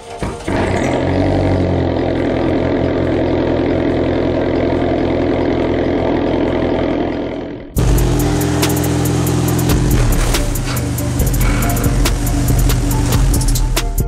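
Chrysler PT Cruiser GT's turbocharged 2.4-litre four-cylinder running steadily at the tailpipe. It is cut off suddenly about eight seconds in by music with a steady beat.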